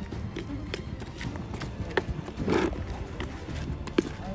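A stick stirring damp groundbait in a plastic bucket, tapping against the side in short irregular knocks about twice a second, with a longer scrape about two and a half seconds in, over a low rumble.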